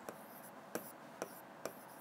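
Marker pen writing on a whiteboard: faint rubbing strokes with three light ticks as the tip meets the board.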